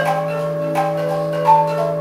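Live improvised experimental music: a steady low drone with bell-like struck notes ringing over it, about two a second.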